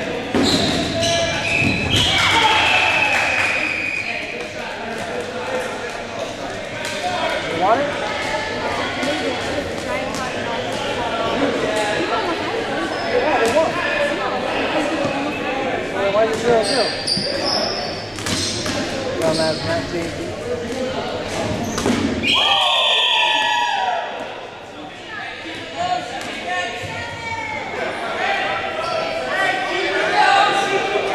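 Rubber dodgeballs bouncing and smacking on a hardwood gym floor again and again, amid indistinct shouting and chatter from players, all echoing in a large gymnasium.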